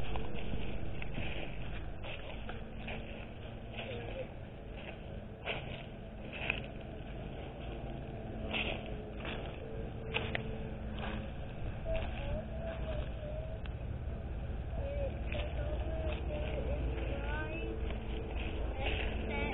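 Footsteps crunching through dry grass and fallen leaves, heard as scattered short crackles over a steady low rumble of wind on the microphone.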